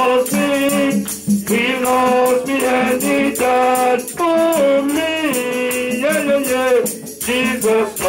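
A man leading a gospel praise song through a microphone, in held notes that slide between pitches. A hand rattle or shaker keeps a steady quick beat behind him.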